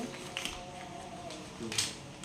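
A few light clicks and taps of eating from plates by hand, one about half a second in and a sharper one near the end, over a faint steady room hum.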